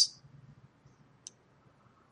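A single short computer-mouse click a little past halfway through, against near silence.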